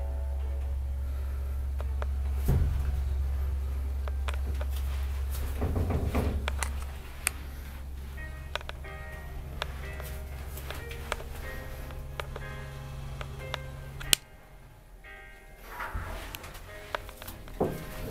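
Mitsubishi Elemotion+ rope (traction) elevator car travelling down, heard from inside the car: a steady low hum with a thump a couple of seconds in. The hum stops with a sharp click about fourteen seconds in as the car lands, followed by the doors opening near the end.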